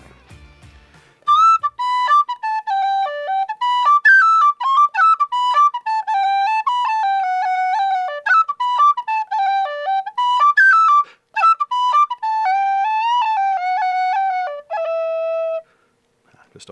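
A tunable, professional-grade tin whistle played solo: a quick, ornamented melody of short stepping notes. It starts about a second in, breaks briefly for a breath partway through and ends on one held note.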